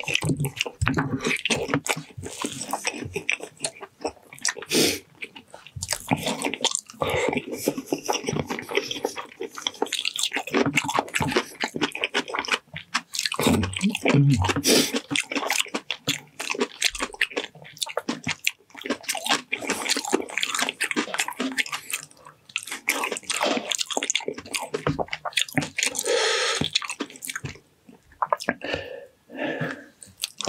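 Close-miked wet chewing, lip-smacking and squelching as a person bites into and chews gelatinous braised ox feet: a dense run of sticky mouth clicks with brief pauses between bites.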